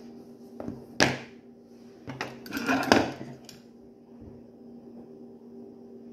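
Makeup things and a hand mirror being handled: one sharp click or knock about a second in, then a couple of seconds of knocks and rustling. A faint steady hum runs underneath.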